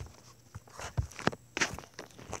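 Handling noise from a phone being moved by hand: a quick cluster of knocks and rubbing scrapes against the device. The loudest knocks come about a second in and again just after one and a half seconds.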